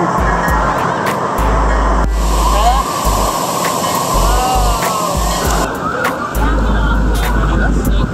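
A giant water-park dump bucket emptying, its water crashing down in a loud rushing cascade. It starts abruptly about two seconds in and stops suddenly a little over three seconds later.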